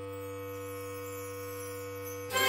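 Concert band holding a soft, steady chord, with a low sustained note underneath.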